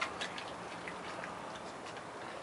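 Brown bear eating from a plastic tub, its mouth making short clicking smacks: two sharper ones right at the start, then fainter, scattered ones over a steady hiss.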